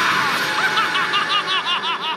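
Evil clown laugh from a jack-in-the-box pop-up scare: a high-pitched cackle in quick 'ha-ha' pulses, about seven a second. It opens on the fading tail of a loud burst from the pop-out itself.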